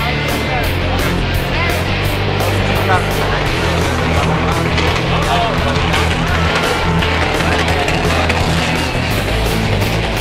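Hard rock music with a fast, steady drumbeat and a heavy bass line.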